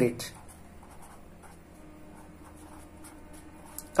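Marker pen writing a word on paper: faint, irregular strokes of the tip across the sheet.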